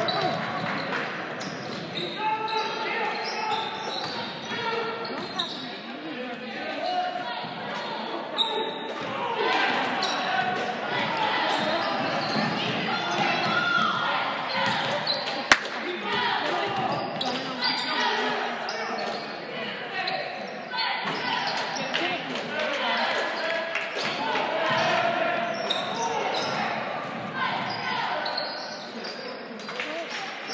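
Basketball dribbled on a hardwood gym floor during play, amid the indistinct voices of spectators and players echoing in a large gymnasium, with one sharp knock about halfway through.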